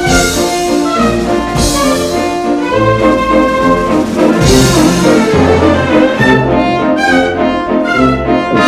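Orchestral cartoon score led by brass, with trombones and trumpets playing a busy, shifting melody over the orchestra.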